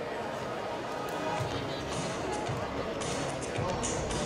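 Athletics stadium background sound: a distant public-address voice and music carrying over the track, with no close-up voice.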